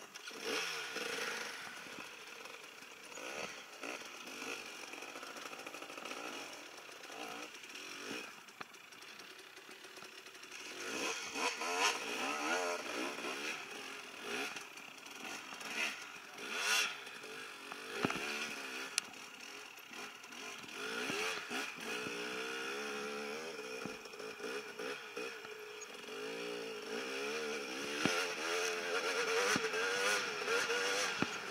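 Dirt bike engine running close by, its revs rising and falling in blips as it is ridden slowly through brush, with a few clattering knocks. In the second half it runs under steadier load as the bike climbs a sandy trail.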